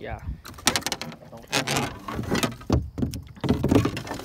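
Irregular knocks, clunks and scrapes of gear and the landing net being handled against a fibreglass boat hull, several sharp bumps in a few seconds.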